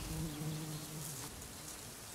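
Faint buzzing of a flying insect, a low steady drone that dies away after about a second and a half, over quiet outdoor ambience.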